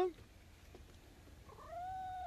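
A domestic cat meowing: one long, drawn-out meow beginning about one and a half seconds in, rising slightly in pitch and then held steady.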